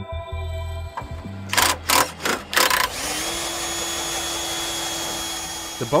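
Music tones fade, then about four quick, loud hits come in rapid succession. From about halfway through, a steady mechanical hum with a constant high whine over a hiss runs at an even level.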